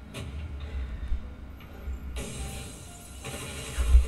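TV drama soundtrack playing back: a low rumble, then a sudden hissing noise about two seconds in, and gunfire near the end.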